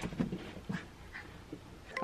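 A pug making a few brief, soft sounds as it moves about.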